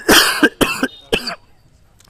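A man coughing into his fist three times in quick succession, the last cough shorter and weaker.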